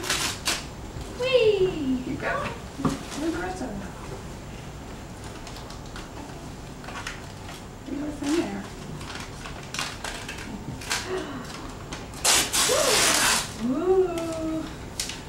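Wrapping and tissue paper rustling and crinkling as a gift is unwrapped, with a louder stretch of paper crinkling near the end. A young child's high voice makes short wordless sounds a couple of times.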